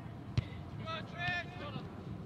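A soccer ball struck once with a sharp thud, followed by a couple of high-pitched shouts from players on the pitch.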